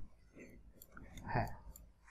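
A few soft computer mouse clicks.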